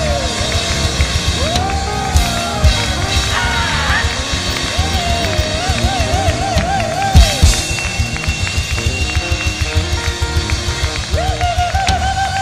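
Live band music: a wavering lead melody held in long notes over keyboard, electric guitar, bass and drums, with a steady beat.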